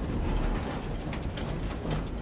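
Steady low rumble of a moving railroad car heard from inside, with a few faint clicks of the wheels over the rails.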